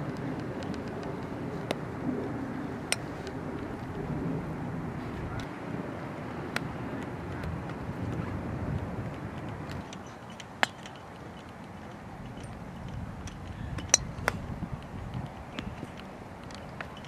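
Golf clubs striking balls: sharp single clicks every few seconds, the loudest about ten and a half and fourteen seconds in, over a steady low rumble.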